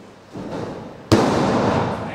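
A wrestler taking a bump on a wrestling ring: one loud slam on the mat about a second in, with the ring rattling and ringing on after it.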